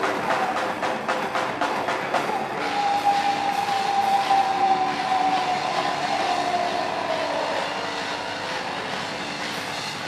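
Live rock band: rapid drumming on a drum kit for the first couple of seconds, then a long held tone that slowly falls in pitch over a ringing wash of cymbals.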